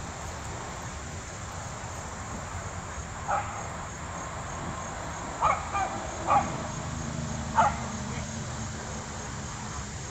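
Dogs barking: five short barks between about three and eight seconds in. Under them runs a faint, steady chirring of insects.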